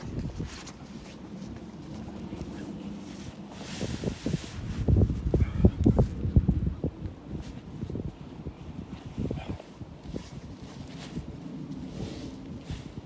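Gusty wind buffeting the microphone, with uneven low rumbles that are loudest about five to six seconds in. Underneath it, the rustle of a waterproof poncho sheet being laid flat on grass.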